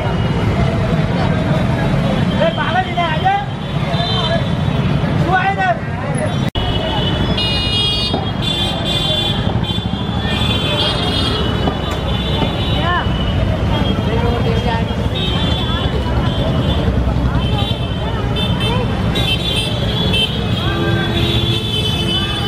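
Busy street noise: voices of passers-by over a steady rumble of motor traffic, with repeated high-pitched horn toots from about seven seconds in.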